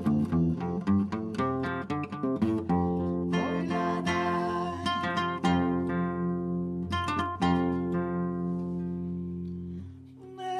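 Acoustic guitar music: a quick run of plucked notes, then strummed chords left to ring, fading out near the end.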